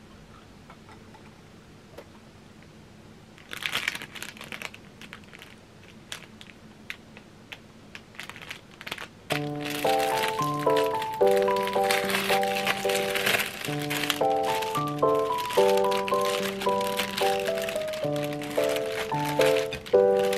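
A thin plastic bread bag crinkles and rustles as it is handled and torn open, starting sharply about three and a half seconds in. About halfway, light background music with a repeating melody of short notes comes in and carries on over the crinkling.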